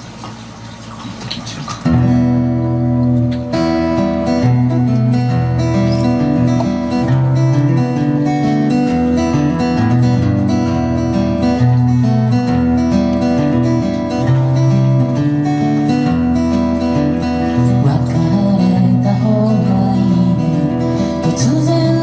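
Solo acoustic guitar playing a folk song's introduction. After a quieter first couple of seconds, the picked and strummed chords come in about two seconds in and run steadily. A voice starts singing at the very end.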